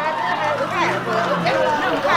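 Indistinct chatter from several people talking at once.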